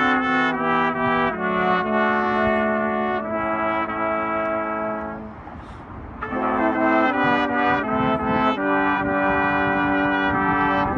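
A brass quintet of two trombones, a French horn and two trumpets playing slow, sustained chords together. The phrase softens and breaks off about halfway through, then the full chords come back in.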